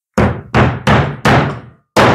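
Small hammer striking a metal nut five times, driving it into a drilled, glued hole in a wooden block. The blows are sharp and uneven in spacing, each fading quickly.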